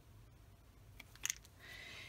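Quiet room tone with a few faint short clicks about a second in, from the small plastic dropper bottle of alcohol ink being handled and set aside.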